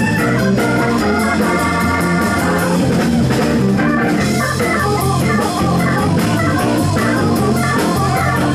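Organ solo on a Nord C1 combo organ with a Hammond-style tone, over bass and drums. It holds a sustained chord for the first couple of seconds, then moves into quicker, choppier runs.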